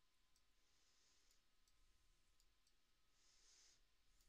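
Near silence: faint room hiss with a few soft, short clicks of a computer mouse, and a brief soft hiss near the end.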